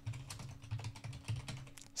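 Computer keyboard typing: a quick, uneven run of keystrokes over a faint steady hum.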